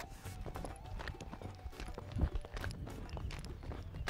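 Many feet jogging and stamping on bare dirt during a group exercise drill, making a stream of uneven thuds, with a heavier thud about two seconds in.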